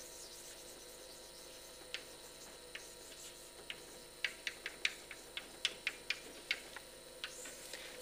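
Chalk clicking and tapping on a blackboard as words are written, in quick irregular strokes: a few at first, then a dense run about four seconds in. A faint steady room hum lies underneath.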